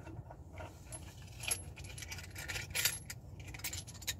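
Light metallic clinks and rattles of hand tools being handled, in a few short clusters, the loudest near the middle and toward the end.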